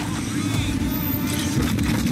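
A car passing close by cyclists, picked up by a bike-mounted camera's microphone: a steady rush of wind and tyre noise.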